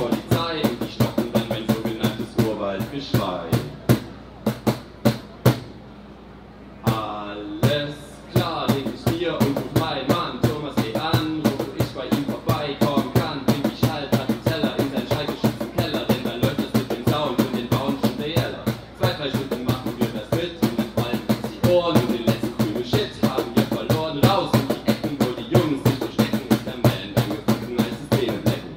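Rapid German rap into a microphone over a beat slapped by hand on a cajón. The beat and the rapping drop out briefly about six seconds in, then carry on.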